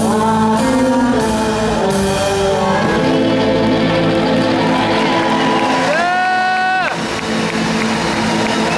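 Live rock band playing, with electric guitars and a drum kit. One long note slides up, holds and falls away near the end.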